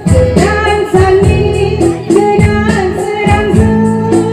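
A woman singing a gospel song in Bodo into a microphone, over instrumental accompaniment with a steady beat.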